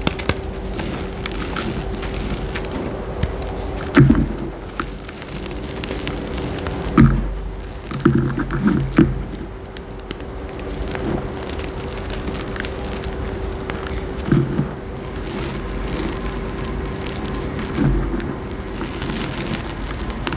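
Hands squeezing and crumbling dyed gym chalk in a bowl of loose chalk powder: a continuous soft powdery rustle, broken by a handful of short, louder crunches as lumps of pressed chalk give way. A faint steady hum lies under it.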